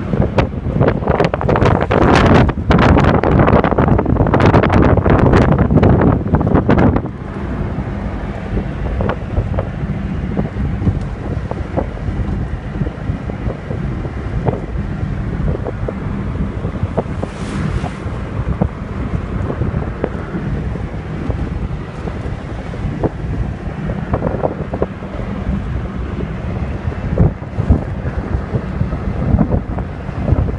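Wind buffeting the microphone from inside a moving car, heavy for the first six seconds or so and then easing, over the steady rush of road and engine noise.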